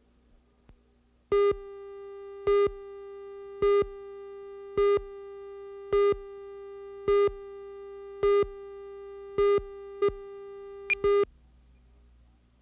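Countdown leader tone on a commercial's slate: a steady electronic test tone with a louder beep about once a second, about ten beeps in all. It cuts off sharply about a second before the end.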